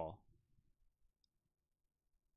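Near silence: room tone, after a spoken word trails off right at the start.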